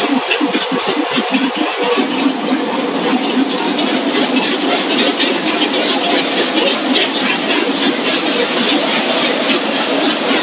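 Tortilla chip production line running, with its hot-air vibrating conveyor and machinery making a continuous dense rattle. A low throb pulses about four times a second for the first two seconds, then settles into steady noise.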